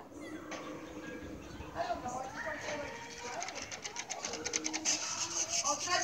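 Horror-movie trailer soundtrack played through a smartphone's small speaker: voices, with a fast patter of clicks partway through.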